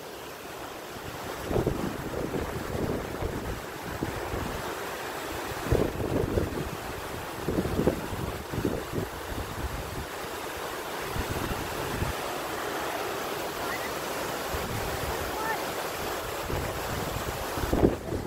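Fast, silty river rushing in a steady wash, with gusts of wind buffeting the microphone.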